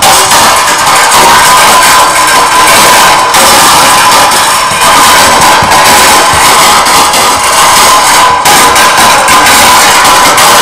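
Harsh noise performance: a loud, distorted, unbroken wall of noise from amplified metal junk, a metal rod scraped against a steel tray and run through electronics. The noise is dense across all pitches with a strong mid-range band and drops out briefly twice.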